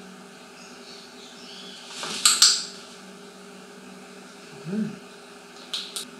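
A handheld training clicker snaps about two seconds in, a sharp, loud double click-clack. A brief low voice sound follows near the end, then another short sharp tick.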